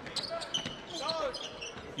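A basketball dribbling on a hardwood court, with sneaker squeaks and a shout from the floor about a second in.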